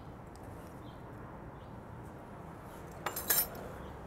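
Quiet kitchen work over a glass mixing bowl of dry batter, then a metal whisk clinking against the glass bowl for about half a second near the end.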